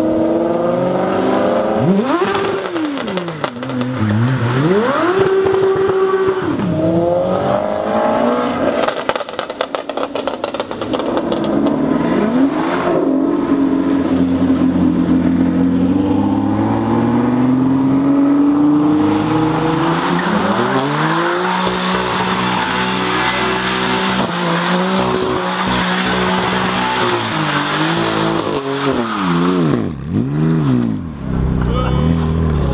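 Supercar engines revving in sharp rises and falls, then a Ford GT's twin-turbo V6 held at high revs as it spins donuts. Tyre squeal builds from about twenty seconds in.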